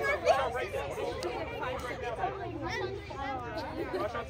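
A group of girls chattering and talking over one another, several voices at once with no single speaker standing out.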